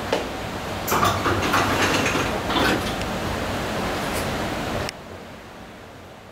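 Mechanical clattering and clicking from a DEVE hydraulic elevator's sliding doors and door mechanism, busiest about one to three seconds in. It breaks off suddenly near the end to a quieter steady background.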